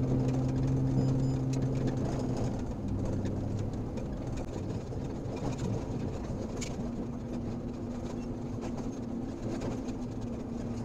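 Pickup truck driving slowly on a rough gravel road, heard from inside the cab: a steady low engine hum over tyre rumble, with scattered small clicks and rattles. The engine note eases about two and a half seconds in and picks up again about seven seconds in.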